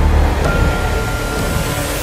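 Cinematic logo-intro sound design: a heavy, deep rumble with a sudden hit about half a second in that leaves a high, steady ringing tone sustained over it.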